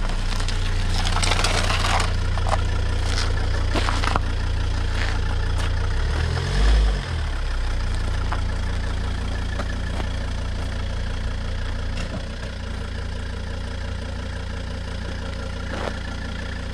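Volvo car engine running at low speed as the car manoeuvres, with a brief rev about six seconds in; the engine sound drops a little in level near the end as the car moves off.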